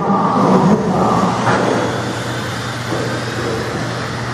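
Several 1/16-scale Traxxas electric RC race cars running on a carpet track, their motors and gears whining as they rise and fall with the throttle over a steady low hum.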